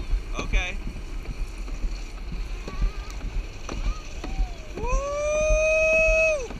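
Alpine slide sled running down the track: a steady low rumble with frequent small knocks. Near the end a rider lets out one long cry that rises and then holds a steady note.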